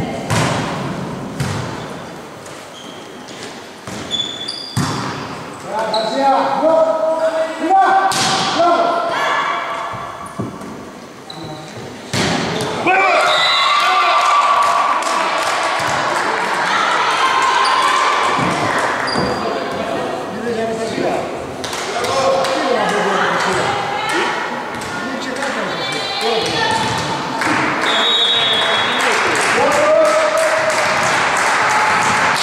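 Volleyball match in a gym hall: sharp hits of the ball off hands, arms and floor, echoing in the hall, among the shouts and cheers of players and spectators. The voices grow louder and denser after about twelve seconds.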